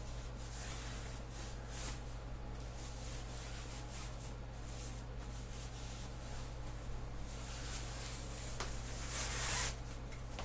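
Cloth bow sock rustling as it is worked off a bow, in faint, scattered rubs and light handling clicks, with a louder rustle near the end.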